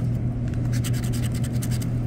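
Scratch-off lottery ticket being scratched with a hard-tipped tool: quick, repeated scraping strokes on the latex coating, over a steady low hum.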